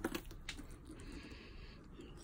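Handling noise as a handbag is lifted off a shelf: a few light clicks near the start, then faint rustling.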